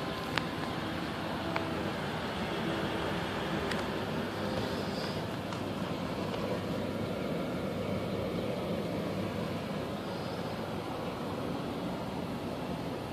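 Steady road and engine noise inside the cab of a 2008 Toyota Tundra pickup cruising at moderate speed, with a couple of light clicks in the first two seconds.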